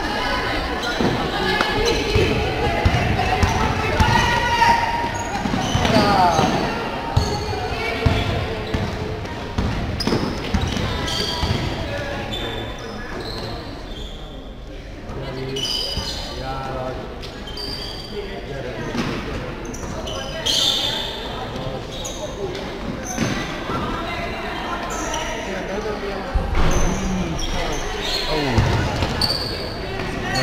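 A basketball bouncing on the court during live play, with sharp repeated knocks echoing in a large sports hall.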